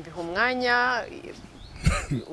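A woman's voice makes one drawn-out vocal sound, about a second long, that rises and then falls in pitch. It is followed near the end by a short, sharp knock.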